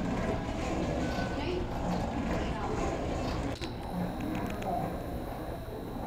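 Omnibike seated leg-cycling exerciser running with a steady low hum and rumble, with a single sharp click partway through.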